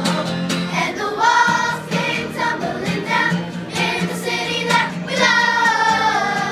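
A children's chorus singing together, holding a long note near the end.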